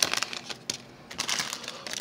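Foil wrapper of a trading card pack crinkling as it is handled and opened: a quick run of crackles at first, thinning to a few scattered ones.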